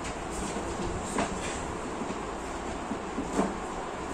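Light knocks of a laminated particleboard panel being handled and set onto a flat-pack furniture frame, one about a second in and the loudest near the end, over a steady background hum.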